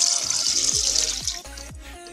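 Milk poured from a measuring cup into a plastic blender jar: a steady splashing pour that stops about one and a half seconds in. Background music with a repeating beat plays underneath.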